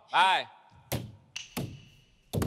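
A man's voice calls out briefly, then three sharp stick strikes on a Thai klong that barrel drum, the first the loudest, with a faint ring after the last.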